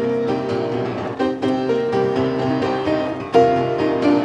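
Upright piano played in a lively, rhythmic style, chords ringing under a melody, with several sharp percussive knocks as the player strikes the piano with his hands for a drum-like beat; the loudest knock comes about three-quarters of the way through.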